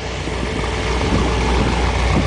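Chevy V8 in a Datsun 240Z idling steadily, a low, even rumble.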